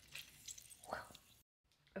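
Faint squishing of a lemon half being squeezed by hand, its juice dripping into frosting, with a few small clicks and a short squeak about a second in. The sound cuts off suddenly about a second and a half in.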